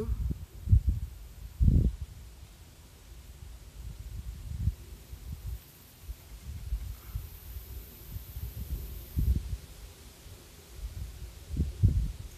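Wind buffeting the microphone: low, uneven rumbling that swells and fades, with a few stronger gusts, the strongest about one and two seconds in and again near the end.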